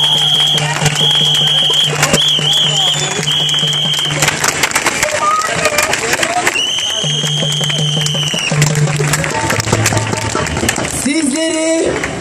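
Protest crowd cheering and clapping, with a whistle blown in several long high blasts: four short ones in the first few seconds, one of them warbling, then a longer blast past the middle. A low steady tone sounds underneath.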